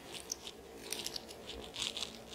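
Faint rustling and small scratchy ticks of hands handling and smoothing a knitted wool sweater panel on a cloth bedspread.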